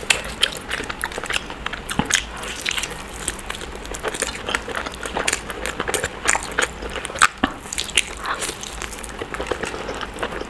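Close-miked eating sounds: a person chewing biryani and biting into a roasted chicken leg, with many sharp, irregular mouth clicks.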